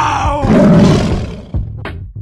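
A lion roar sound effect: one loud roar that falls in pitch and turns raspy, dying away about a second and a half in. A drum-machine beat starts near the end.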